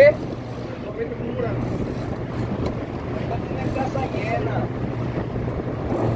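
Sport-fishing boat's engine running with a steady low hum, with wind buffeting the microphone and water noise around the hull. Faint voices are heard now and then.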